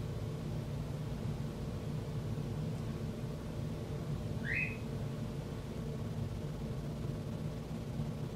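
Steady low hum of room background noise, with one short rising chirp about four and a half seconds in.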